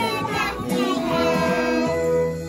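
A group of young children singing a song together over an instrumental backing, ending on a held note near the end.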